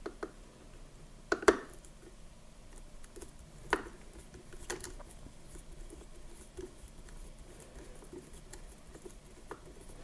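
Faint scratching and clicking of a hand screwdriver bit turning a barrel-band screw out of a Marlin 336W lever-action rifle, with a few sharper ticks about one and a half, four and five seconds in.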